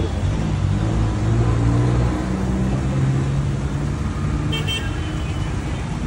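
A car's engine running close by with street traffic around it, a steady low hum that eases off after about five seconds.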